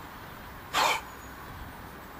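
A person's single short, forceful breath out, about a second in.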